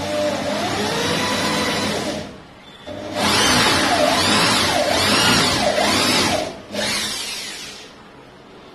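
Corded electric drill boring up into a wooden wardrobe panel, running in three bursts with brief pauses about two seconds in and again past six seconds. Its pitch rises and falls as it runs, and the middle burst is the loudest.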